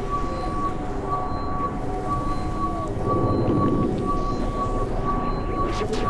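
Experimental synthesizer drone music: a high beeping tone pulsing about twice a second over held tones and a low rumbling drone, with a thicker cluster of tones swelling about three seconds in.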